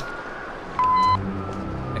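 One short, steady electronic beep from a field radio set about a second in, followed by a low electric buzz.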